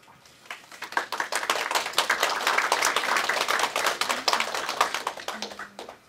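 Applause: a group of people clapping, starting about half a second in, building to a steady patter and dying away near the end.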